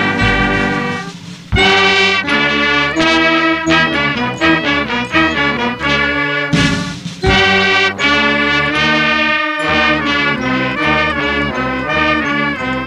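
A regimental brass and wind band plays the university anthem: trumpets, euphonium and tuba, with clarinet, saxophone and bell lyre. It plays in sustained phrases, with short breaks about a second in and about seven seconds in.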